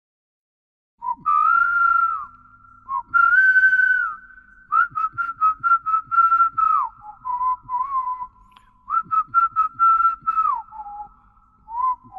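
A person whistling an unaccompanied melody, starting about a second in: a clear single line in short phrases with quick repeated notes, several phrases sliding down in pitch at their ends.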